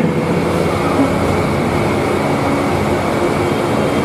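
Steady rushing background noise of a hall picked up through a microphone, with a faint steady high whine running through it.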